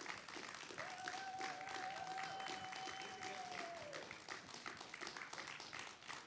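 Audience applauding, with one cheer held for about three seconds partway through.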